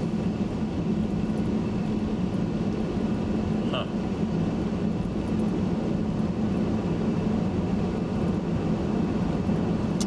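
Steady road and engine noise heard inside a moving car's cabin at highway speed, a constant low hum with tyre rumble.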